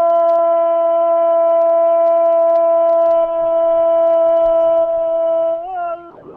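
Radio football commentator's long goal cry: one loud held 'gooool' at a steady high pitch for almost six seconds, wavering briefly just before it stops near the end.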